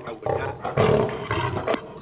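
Loud, rough rumbling noise over a narrow-band phone line, in two surges without words, typical of a handset being handled or a bad call connection.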